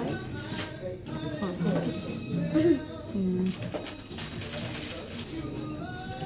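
Background music playing, with low, indistinct voices and a few light clicks.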